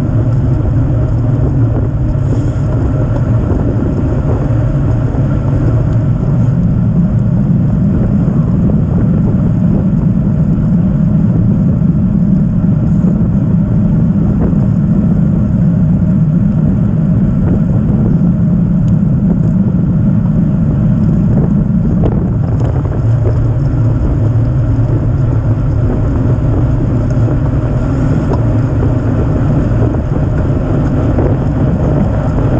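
Loud, steady wind buffeting on a bike-mounted camera's microphone, with the rumble of road-bike tyres on asphalt, during a group road race at about 20 mph. The rumble grows heavier for a stretch in the middle.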